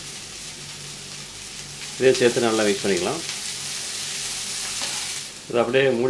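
Chopped flat beans sizzling as they fry in oil in a wok. The sizzle grows louder about two seconds in and drops off sharply near the end.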